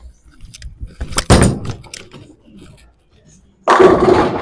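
A Virtual Energy Blackout bowling ball is thrown: it lands on the lane with a loud thud about a second in. Near the end it crashes into the pins, and the pins clatter as they scatter.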